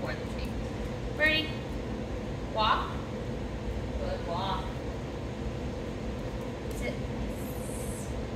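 Three brief, high-pitched calls in a woman's voice, the kind of short cue or praise sounds given to a dog at heel, over a steady low hum.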